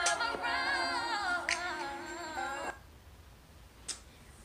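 A recorded song with a woman singing over sparse snap-like percussion, which stops about two-thirds of the way in, leaving quiet room tone and a single click near the end.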